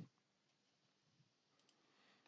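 Near silence, with two faint clicks a little past a second in.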